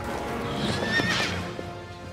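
A horse whinnies once, a wavering high call from about half a second in to just past the middle, over background music with long held tones.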